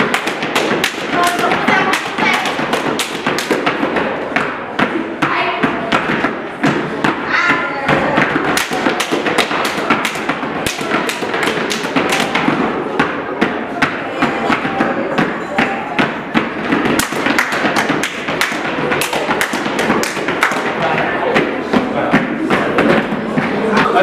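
Gumboot dance: rubber gumboots slapped by hand and stamped on the floor by several dancers together, a quick, steady run of slaps and stamps.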